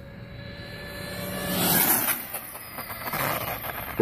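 An RC speed-run car, an OFNA Rumble Bee, making a full-throttle pass: a rushing, high whine that builds to its loudest about two seconds in and then fades as the car goes by and away.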